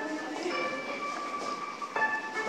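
Background music with long held notes playing through the shopping mall's sound system.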